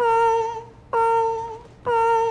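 A man imitating a fire alarm with his voice: a high, steady hummed tone repeated in pulses, three of them about a second apart, each sagging slightly in pitch as it ends.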